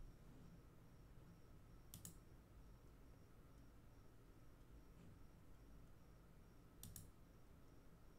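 Near silence: room tone, with two faint short clicks, one about two seconds in and one near seven seconds.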